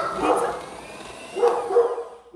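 Electric hand mixer running with its beaters in a stainless steel bowl of batter, a steady motor whine. Two louder short pitched cries, one at the start and one about a second and a half in, sound over it.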